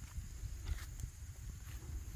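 Faint handling noise: a low rumble with a few light ticks, as the recording phone is held and shifted against a rangefinder eyepiece.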